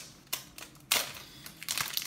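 Light clicks and a short scraping rustle of plastic card holders being handled on a table: one click about a third of a second in, a brief scrape around a second in, and a few small clicks near the end.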